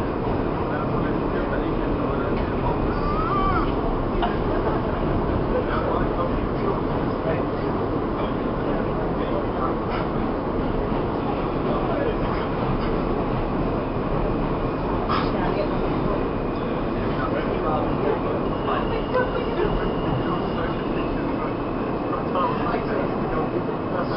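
New York City subway car running, a steady rumble of wheels and car noise heard from inside the car. Near the end a thin, steady high squeal joins it as the train slows into a station.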